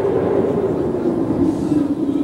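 Storm sound effect: wind howling at a steady level, its pitch wavering and sinking slightly, over a low rumble.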